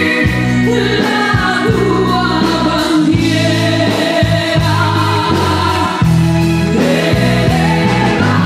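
A woman singing live into a microphone with a band of electric bass, guitar and drums playing a steady beat.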